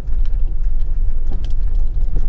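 A vehicle travelling over a rough gravel road: a steady low rumble with a few faint ticks.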